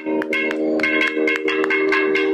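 Nadaswaram holding one long, steady note over quick, ringing metallic percussion strokes, about five a second.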